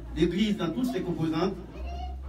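A man speaking through a handheld microphone and PA, with a low hum from the sound system underneath.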